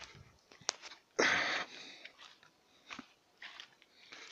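A short rush of breath close to the microphone about a second in, with a couple of faint clicks.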